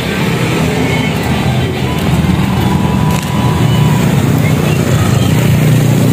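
Steady low rumble of a motor vehicle engine running close by, with street traffic.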